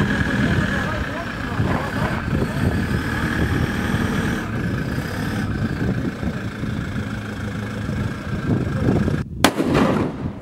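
A vehicle engine running, with voices in the background, for most of the time. Near the end comes a single sharp shot from a scoped hunting rifle, a zeroing shot fired to check where the scope puts the bullet.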